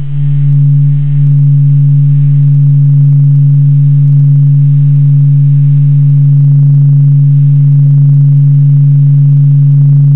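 The Sun's acoustic vibrations turned into sound from NASA data: a loud, deep hum that swells and dips once or twice at first, then holds steady.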